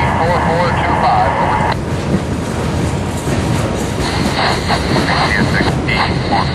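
Scanner radio transmission ending with the call number "4425" and cutting off abruptly a little under two seconds in as the squelch closes, over the steady rumble of an EMD GP40-2 diesel locomotive moving slowly on the track. About four seconds in the radio opens again with hiss and a voice.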